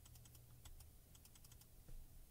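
Faint computer keyboard key presses, a quick, irregular run of light clicks.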